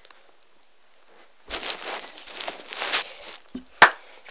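Rustling handling noise for about two seconds, starting about a second and a half in, then one sharp click near the end.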